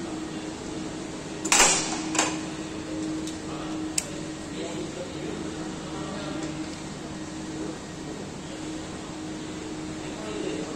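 Hand-tool work on a scooter's belt-drive variator over a steady workshop hum: a short loud clatter about one and a half seconds in, a knock just after two seconds, and a single sharp click at four seconds, then quieter handling.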